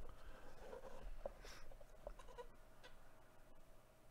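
Faint scraping and a few light clicks of a cardboard box being slid out of its sleeve.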